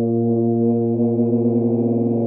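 Unaccompanied tuba holding one long low note, steady in pitch, with a slight wavering in loudness in the second half.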